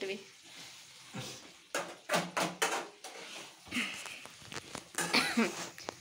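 Steel spatula scraping and clinking against a steel kadai as thick chicken masala is stirred, with a run of sharp scrapes about two seconds in. A voice speaks briefly near the end.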